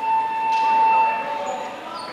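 Gym scoreboard buzzer sounding one steady tone for about a second and a half during a stoppage in play.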